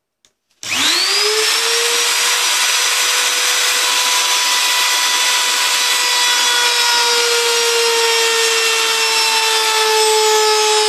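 Handheld electric router switched on about half a second in, its motor whining up to full speed within a fraction of a second, then running loud and steady with a flush-trim bit cutting the edge of an oak board. The pitch eases down slightly in the last few seconds.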